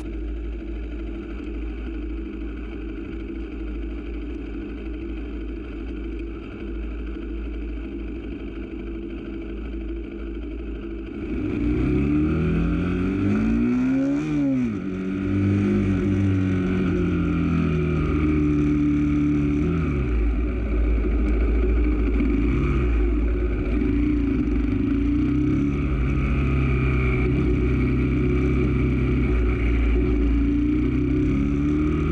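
Motorcycle engine running steadily and fairly quietly at low speed, then about eleven seconds in it gets louder and its pitch rises and falls several times with the throttle and gear changes.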